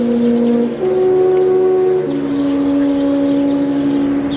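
Alphorn playing slow, long-held notes: three notes in turn, the last held for about three seconds.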